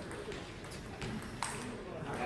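Table tennis ball clicking sharply off rubber bats and the table during a rally, a few crisp hits with the loudest about one and a half seconds in, over a background murmur of voices in a large hall.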